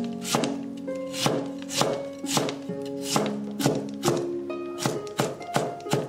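Cleaver mincing lotus root slices on a wooden cutting board, a steady run of chopping strokes about two a second, over background music.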